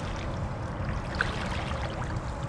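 Water swishing and splashing around the legs of a person wading through shallow pond water in waders, over a steady low rumble.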